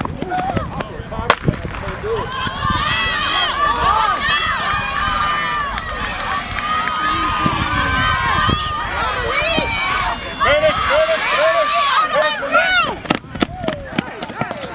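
A starting pistol fires once about a second in, then many spectators shout and cheer the sprinters on as they race. Quick footfalls near the end as a runner passes close.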